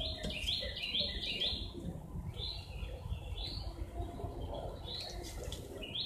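A songbird chirping: a quick run of about five chirps in the first second and a half, single chirps around two and a half and three and a half seconds in, and a few more near the end.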